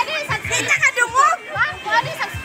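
Several women's voices overlapping in excited shouts, squeals and laughter, with no clear words.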